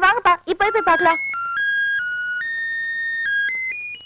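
A telephone's electronic ringtone melody: a string of single held beeping notes that step up and down in pitch and climb higher near the end, starting about a second in after a brief spoken line.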